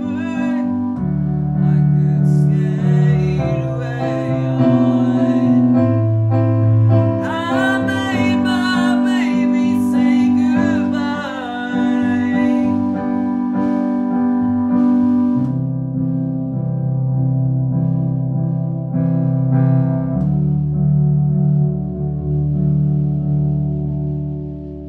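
A slow ballad played live on a keyboard with a piano sound, with a voice singing wordless runs that swoop up and down over it. About halfway through, the voice drops out and the keyboard carries on alone with held chords.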